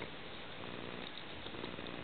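Underwater ambience heard through a camera housing: a steady hiss with a faint, even low hum.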